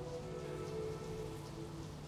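Steady rain, an even hiss, under quiet background music with held notes.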